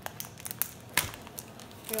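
Foil wrapper of a trading card pack crinkling and crackling in sharp little clicks as fingers work at a pack that is hard to open, with one louder crackle about a second in.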